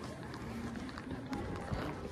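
Background din inside a large store: a steady low hum with faint distant voices and scattered soft thumps.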